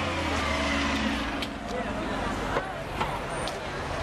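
City transit bus driving past close by, its engine's low hum fading about a second in, with other street traffic going by.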